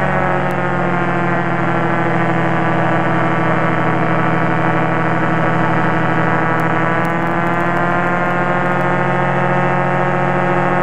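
Light aircraft's piston engine and propeller droning steadily in flight, mixed with wind rush. The pitch drops slightly right at the start, then holds.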